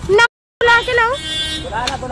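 Voices talking in an argument, with a brief drop to dead silence early on. About a second in, a short car horn toot sounds under the voices.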